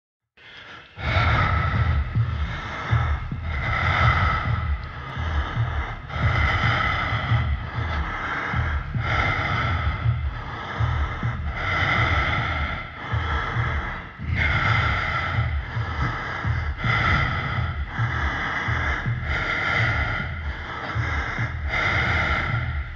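Spooky intro soundtrack: a heavy-breathing sound effect repeating about once a second over a deep pulsing rumble.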